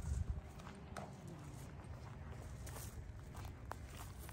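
Footsteps of a person walking over grass and bare dirt, with a few faint scuffs and ticks over a steady low rumble.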